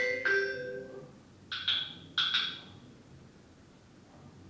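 A short run of struck, bell-like pitched notes, like mallet percussion, ringing and fading, followed by two quick pairs of higher notes about one and a half and two and a quarter seconds in that die away within about a second.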